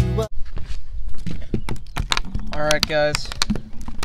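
Background music cuts off just after the start, followed by scattered light knocks and clicks on a wooden pier deck and a short burst of voice near three seconds in.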